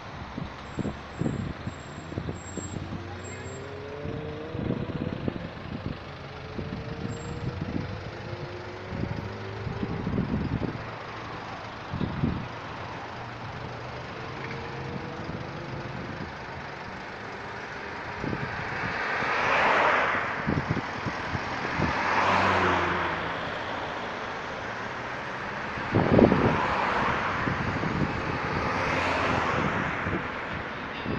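Road traffic on a multi-lane road. In the first half, vehicles pull away with their engine notes climbing in pitch. In the second half, four cars pass close by one after another, each swelling and fading, the third the loudest.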